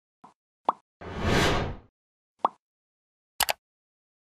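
End-screen animation sound effects: a few short pops, a rushing whoosh about a second long, another pop, then a quick double click near the end as the subscribe button is clicked.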